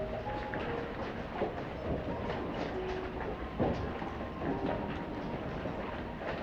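Steady rain falling, with many pattering drops and a low rumble underneath.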